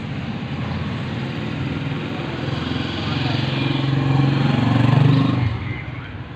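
A road vehicle's engine passing close by, growing louder to a peak near the end, then dropping away sharply.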